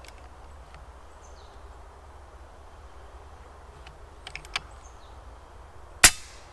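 An FX Impact M3 PCP air rifle being readied to fire: low background with a few faint small clicks about four seconds in, then the rifle's loud, sharp shot right at the very end.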